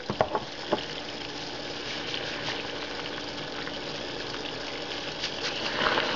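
Pot of salted water at a full boil, a steady bubbling hiss, with a few light clicks in the first second.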